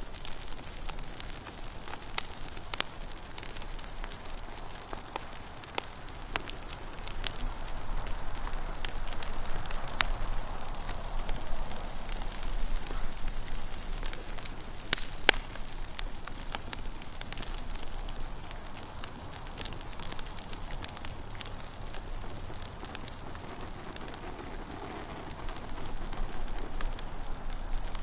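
Redwood model house burning fully ablaze: a steady rush of flame with sharp crackles and pops of burning wood scattered throughout, a little louder from about eight seconds in.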